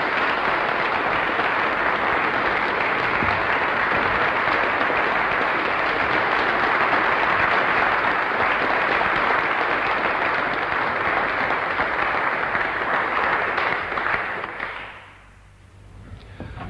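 An audience applauding steadily, the clapping dying away near the end.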